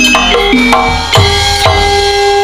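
Javanese gamelan playing: struck metal keyed instruments ring out a melody of stepped notes, a new note every quarter to half second, over drum strokes.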